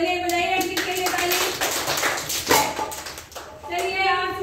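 High children's voices calling out, then a burst of hand clapping lasting about a second around the middle, and more voices near the end.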